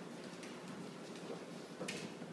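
Faint clicks of a French bulldog's claws on a hardwood floor as it walks, with a sharper click near the end.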